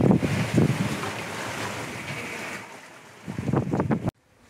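Wind buffeting the microphone over the rush of water past the hull of a sailboat under way, fading steadily down toward the end.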